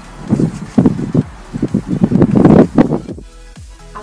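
Irregular bursts of outdoor noise, wind- and rustle-like, for about three seconds. Then background music with steady held notes comes in near the end.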